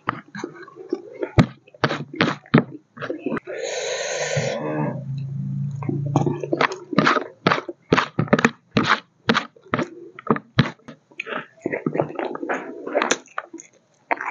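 Close-up eating sounds: chewing and lip-smacking of rice and pork curry eaten by hand, with many short, sharp mouth clicks. About three and a half seconds in comes a breathy noise followed by a low hum lasting about two seconds.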